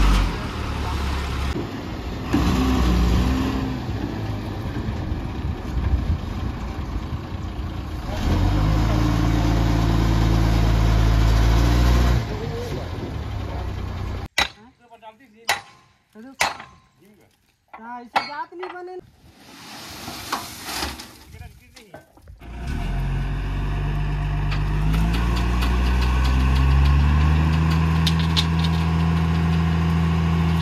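Tata 2518 tipper truck's diesel engine running steadily, then revving up and holding at higher revs as the tipper body is raised to dump its load of soil. About halfway through there is a stretch of several seconds with voices and little engine sound.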